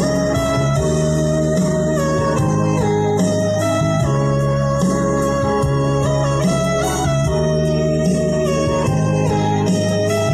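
Instrumental section of a farewell song played on an organ-voiced electronic keyboard: sustained chords over a steady bass, the harmony changing about once a second.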